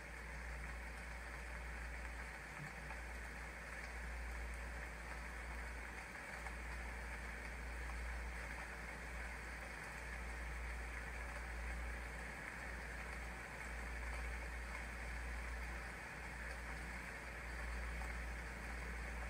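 Ambient meditation soundscape: a steady rushing noise like flowing water over a low, gently swelling rumble, with no clear melody.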